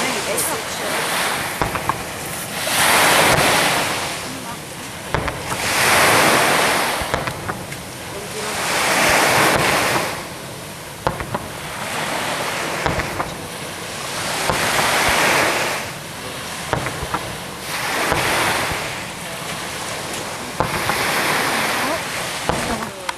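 Sea waves breaking on a beach at night, one surge of surf about every three seconds, each rising and washing back down.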